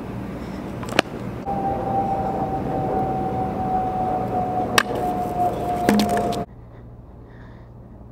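Scooter wheel rolling over asphalt, a steady rough noise with a few sharp clicks, joined by a steady whine that falls slightly in pitch. The sound cuts off abruptly near the end.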